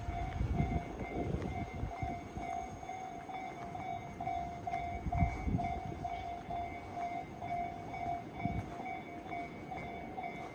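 Japanese railway level-crossing warning bell ringing in a steady repeating ding, about two rings a second, with low rumbles and thuds underneath, the strongest about halfway through.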